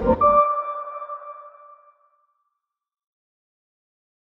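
Short logo sting: a low rumbling whoosh ending in one bright ringing tone with overtones that fades out about two seconds in.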